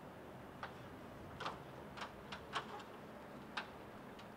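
Faint, irregular sharp clinks, about seven in four seconds, each with a brief ring: a flagpole halyard and its clips knocking against the metal pole as the flag flies in the wind.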